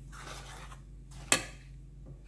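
Metal spoon stirring glutinous rice flour and water in a stainless steel bowl, a soft scraping, with one sharp clink of the spoon against the bowl a little past halfway.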